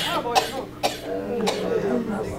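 A person coughing about four times in quick succession, close to the microphone, with murmured speech between the coughs.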